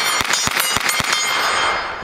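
SIG MPX PCC 9mm carbine firing a quick string of shots in the first second, with steel targets ringing after the hits.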